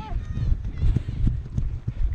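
Running footfalls on grass, picked up by a body-worn action camera: uneven low thuds and knocks with each stride as the camera jolts.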